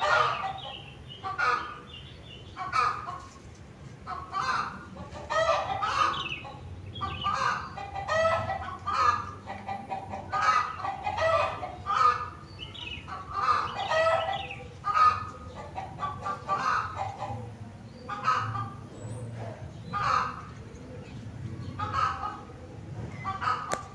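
Chickens clucking: a steady run of short calls, one or two a second, over a low background hum.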